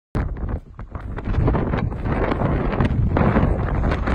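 Wind blowing hard across the phone's microphone: a gusty, low rumbling buffet that eases briefly near the start and then builds again.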